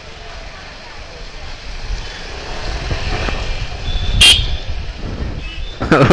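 Motorcycle riding slowly through street traffic, the low engine and wind rumble on the microphone growing louder as it speeds up. A brief, sharp, high-pitched ring or toot sounds about four seconds in.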